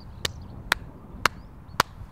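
Four slow, sharp handclaps about half a second apart, each a little louder than the last.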